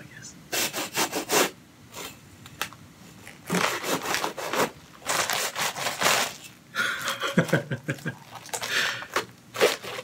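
A large metal-framed hand saw cutting through a head of lettuce: rasping strokes in several runs with short pauses, mixed with the crunch and tearing of the leaves as the head comes apart.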